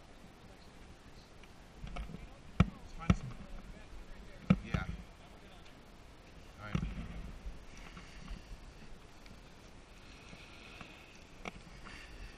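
A few sharp clicks and knocks from ski gear being handled, bunched a couple of seconds in, then a softer thump, over a low rumble with faint voices in the background.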